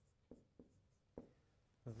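A marker writing on a whiteboard: a few faint, sharp taps and strokes of the tip on the board.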